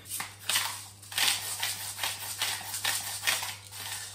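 A hand salt grinder being twisted over a pot of water, a quick run of rasping grinds a few times a second: salting the pasta water. A low steady hum lies underneath.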